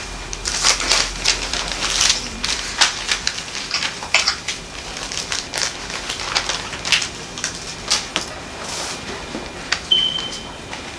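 Thin Bible pages being leafed through by hand: an irregular run of crisp paper rustles and flicks, several a second, as a passage is searched for.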